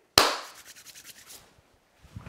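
A single sharp hand clap, followed by a fading tail of quick, evenly spaced echoes lasting about a second.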